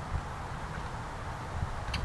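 Low, fluctuating rumble of wind on the microphone of a handheld camera being carried outdoors, with a brief click near the end.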